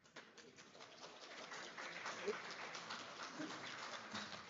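Light applause from an audience, a dense patter of claps that swells over the first two seconds and then holds.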